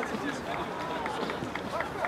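Footballers' distant shouts and calls on the pitch, over scattered short knocks and footfalls of play on artificial turf.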